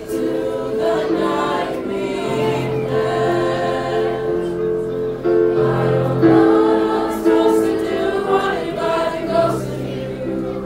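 A mixed high school choir singing, with long held notes and chord changes.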